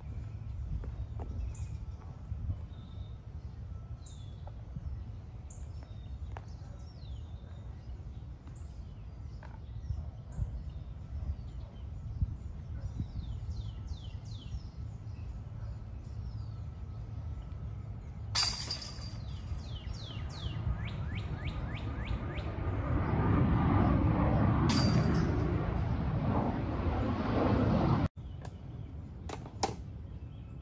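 Small birds chirping over a steady low rumble. Two sharp crashes come about two-thirds through, followed by a few seconds of louder, busier noise that cuts off suddenly near the end.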